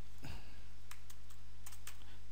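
Computer keyboard typing: a scattering of light keystrokes over a steady low electrical hum.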